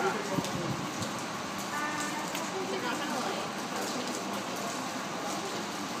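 Indistinct voices of several people over a steady hiss.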